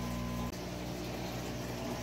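Aquarium air line bubbling under water, a steady fizzing wash of bubbles, preceded for about half a second by a steady low hum.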